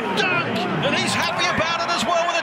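Speech: a male TV commentator calling the basketball play, over arena crowd noise.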